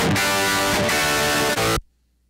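Electric guitar chords played back through the Ignite Emissary amp simulator with no cabinet impulse response: a distorted tone with a lot of hissy top end, which sounds pretty bad without the cabinet part. It cuts off suddenly near the end.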